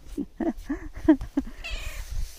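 Grey long-haired cat giving a quick run of about five short meows.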